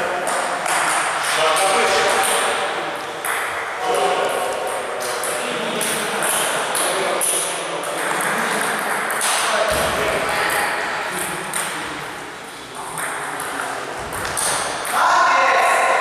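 Table tennis ball struck back and forth in a rally: a quick run of sharp clicks of the ball on rubber bats and the table, echoing in a large hall.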